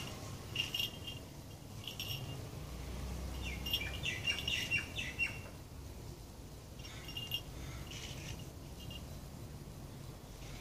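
Small birds chirping in short, high bursts, with a busier run of quick chirps near the middle.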